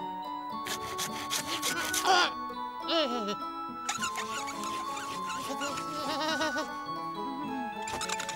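Cartoon background music with steady melodic notes, and a character's wordless, babbling voice sliding up and down over it around two to three seconds in and again near six seconds.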